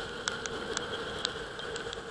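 Raindrops tapping in irregular sharp ticks on a camera housing, over a steady muffled rush of wind and road noise from a motorcycle riding in rain.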